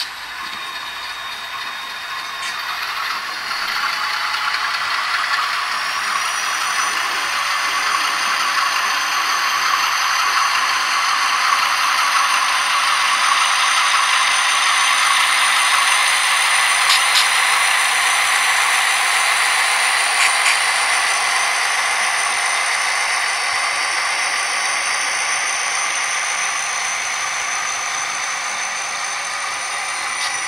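HO-scale model diesel locomotives running past close by on the layout track, giving a rattling, clattering running noise with a steady high whine. It grows louder toward the middle and fades toward the end.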